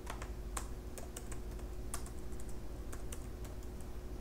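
Typing on a computer keyboard: irregular, fairly quiet key clicks, with a faint steady hum beneath.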